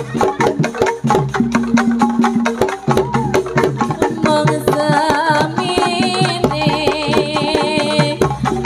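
Javanese jaranan (kuda lumping) accompaniment music: quick, dense drum strokes under ringing pitched tones, with a wavering high melodic line joining about halfway through.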